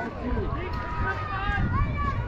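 Voices of players and spectators calling out across a ball field, over a steady low rumble.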